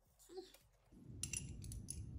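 Faint, light metallic clicks of small hardware (a footpeg's lock nut and bolt) being handled between the fingers, a few clinks in the second half after a near-silent start.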